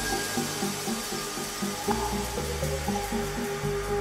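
Live ambient electronic music from hardware synthesizers: a steady repeating sequence of short synth notes over a shifting bass line, with a hissing wash of noise on top and a held note coming in near the end.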